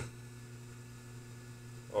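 Faint steady electrical hum with light hiss.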